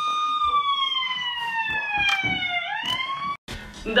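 A siren wail, as of an ambulance: one high tone that holds, slides slowly down in pitch, then swoops back up briefly and cuts off suddenly near the end.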